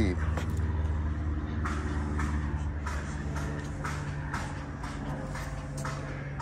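Steady low hum of an idling engine, with footsteps on a fibreglass deck about every half second.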